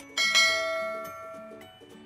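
A mouse-click sound effect followed by a bell-like notification chime that rings out and fades over about a second and a half, over soft background music.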